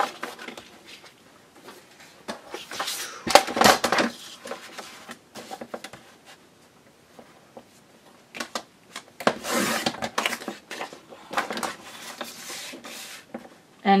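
Sheets of cardstock being handled and slid across a desk and onto a sliding-blade paper trimmer, which cuts a strip off a sheet: a few short bursts of paper rustling and plastic clicks.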